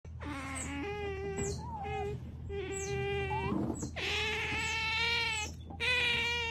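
Otters giving a series of long, steady, high-pitched whining calls, about four in all, with short pauses between them.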